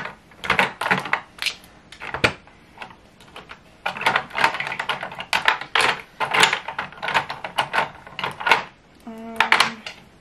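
Plastic lip gloss tubes clicking and clattering against each other and a clear plastic organizer tray as they are picked up and set down, in quick irregular clusters of light taps.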